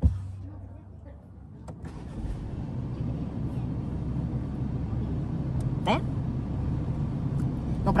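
Inside the cabin of a BMW X1 pulling away: a sharp click and a short low hum at the start, then a low engine and road rumble that builds steadily as the car gets moving.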